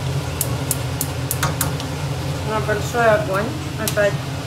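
A few light clinks of a metal spoon on a stainless-steel pot over a steady low hum, with a short stretch of speech about two and a half seconds in.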